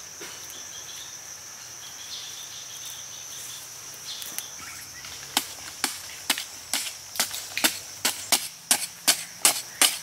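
A hand hoe chopping into hard-packed dirt, a run of sharp strikes about two to three a second starting about halfway through and quickening slightly. Under it a steady high insect drone runs throughout.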